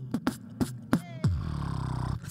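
Human beatboxing into a handheld microphone: a hip hop beat of mouth-made kick drum and snare hits. About a second in, a rising pitched sweep leads into a held low buzzing bass note.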